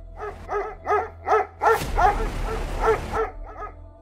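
A dog barking repeatedly, short sharp barks about three a second, with a brief rushing hiss behind them in the middle.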